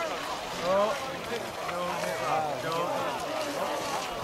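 Several people talking at once, indistinct overlapping chatter with no clear words.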